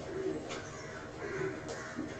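Cloth rubbing across a whiteboard in repeated wiping strokes, about one a second, with a couple of faint clicks.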